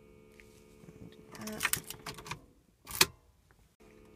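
Keys rattling and an ignition switch clicking as the car key is turned, ending with one sharp, loud click about three seconds in.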